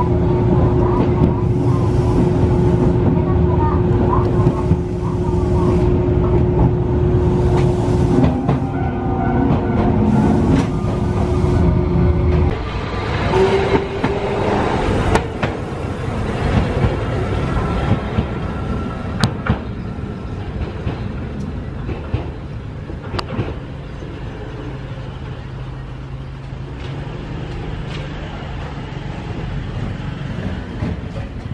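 A Tokyu Setagaya Line tram running on its rails, with a steady motor tone that stops about twelve seconds in. A few sharp clicks follow as the sound grows gradually quieter.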